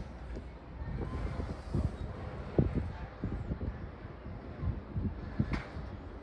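Riding inside a moving Disney Skyliner gondola cabin: a steady low rumble with small knocks and rattles scattered through it, the strongest about two and a half and five and a half seconds in.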